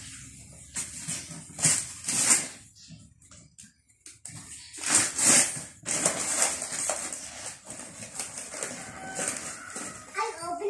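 Wrapping paper and cardboard rustling, crinkling and tearing in several uneven bursts as a child pulls the paper off a large gift box, with a quieter pause in the middle.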